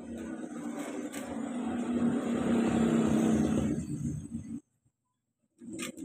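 A motor vehicle's engine running close by, swelling to its loudest about three seconds in, then cutting off suddenly just before five seconds.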